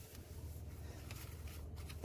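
Faint, soft rubbing of a damp tissue wiped around the dusty inside of a Volvo 210 excavator's air filter housing.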